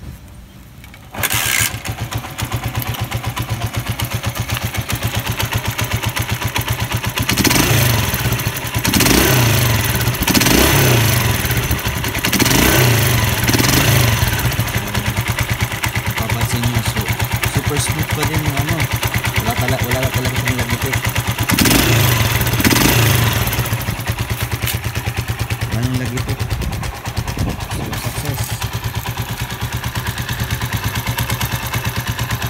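Honda TMX155's single-cylinder four-stroke pushrod engine starting about a second in, then running at idle. It is revved in several throttle blips about a third of the way in and again briefly past two-thirds. This is a test run of the valve train after a rocker arm and push rod replacement made to cure a ticking noise.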